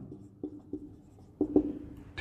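Marker pen drawing on a whiteboard: a few short strokes with pauses between them as a line is drawn and a letter written.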